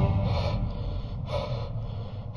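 Music cuts off at the start, leaving a person's heavy breathing: two deep, airy breaths about a second apart over a low rumble.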